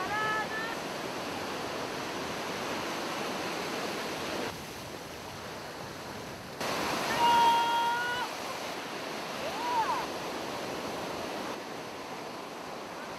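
Ocean surf washing in on the beach, a steady rush with wind on the microphone. A voice calls out briefly at the start and again, longer and held, a little past the middle.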